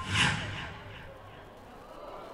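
A recorded voice over the hall's sound system trails off just after the start, then only a quiet, even background hush remains.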